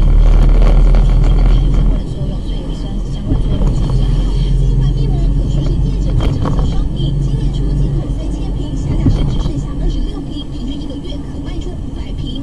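Steady low engine and road drone of a moving car, picked up inside the cabin by a dashcam's microphone, louder for the first two seconds.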